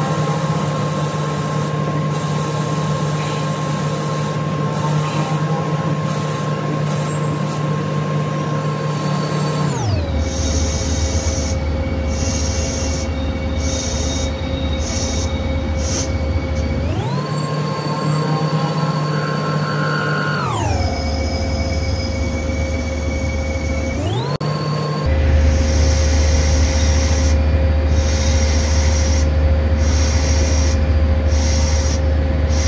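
A CNC lathe roughing and profiling a brass ball with a VNMG turning insert. The spindle drive gives a steady whine that drops in pitch about ten seconds in, rises again a little past halfway, drops, rises briefly and drops once more as the spindle speed changes. It gets somewhat louder near the end.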